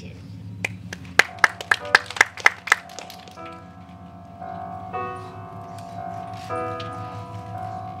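Backing music for a song starting over a PA: a quick run of about seven sharp, evenly spaced clicks, about four a second, then soft keyboard notes come in and carry on.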